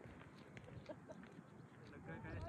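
Near silence: faint outdoor background with a few faint, short calls and ticks.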